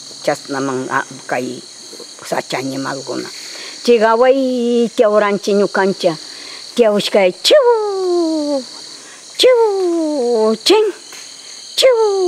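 A woman's voice, first speaking briefly, then making several long drawn-out cries that slide down in pitch, over a steady high-pitched chorus of forest insects.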